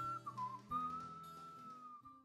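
Music: a whistled melody over the song's accompaniment, settling on one long held note as the track fades out.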